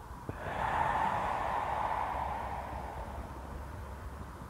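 A long, audible out-breath, a breathy hiss that swells about half a second in and fades away over the next two seconds or so. It is the exhale of the qi gong fire-element movement as the arms come down. A faint tap comes just before it.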